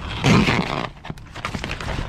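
A black plastic damp-proof course membrane being bent up by hand and dropped back onto a timber pallet: a loud rustling flap near the start, then light crackles and taps as the sheet settles.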